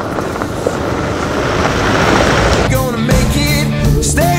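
A four-wheel-drive ute drives past on a gravel road, its tyres crunching over the loose gravel, growing louder toward the middle. After about two and a half seconds a rock song with singing comes back in.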